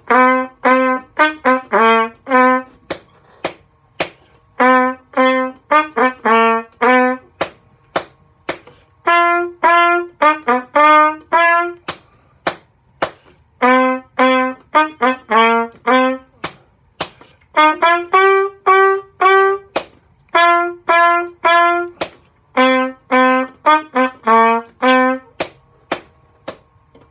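Unaccompanied trumpet playing a fast blues exercise in short, detached notes, in phrases of about six or seven notes broken by brief rests.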